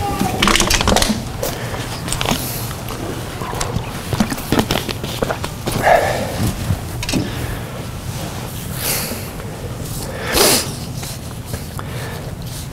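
Bible pages being turned and loose sheets of paper rustling on a wooden pulpit, in a series of short rustles and light knocks, over a low steady room hum.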